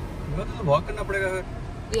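A voice speaking over the steady low rumble of a car driving slowly, heard from inside the cabin.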